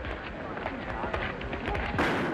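Men's voices in a commotion over a run of short knocks and clicks, on an old film soundtrack.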